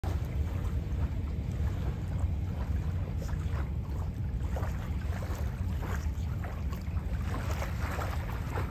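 Wind buffeting the microphone outdoors: a steady, fluctuating low rumble with no distinct events.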